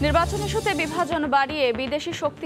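A hissing whoosh with a low rumble under it, fading out about a second in, as a voice-over begins speaking.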